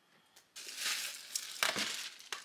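Clear plastic bag crinkling and rustling as it is handled around a boxed laptop, starting about half a second in, with a few sharper crackles near the end.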